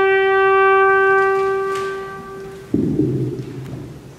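A trumpet holds one long note that fades out about two and a half seconds in, its higher overtones dropping away first. Just after it ends, a sudden low noise comes twice in quick succession and dies away in the church's reverberation.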